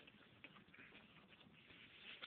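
Near silence, with a few faint light ticks from the flaps of a small cardboard box being opened by hand.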